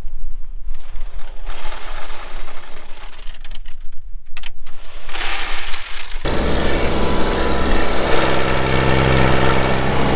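Tractor engine running. It is fairly faint at first with scattered clicks, then from about six seconds in it becomes a much louder, steady drone as the tractor drives along the road.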